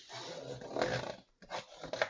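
Bone folder rubbing along a diagonal fold in a sheet of designer paper to crease it: one long rasping stroke, a brief pause, then a second shorter stroke just before the end.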